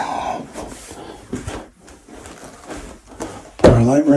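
Faint rustling and a few soft knocks from a person walking on carpet while handling a camera and flash. Speech starts again near the end.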